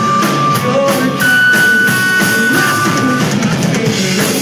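Live rock band playing an instrumental passage: drum kit, electric guitars and keyboard, with a few long held high notes over a steady beat.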